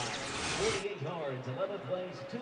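Broadcast replay-transition whoosh lasting to just under a second in, laid over stadium crowd noise and voices.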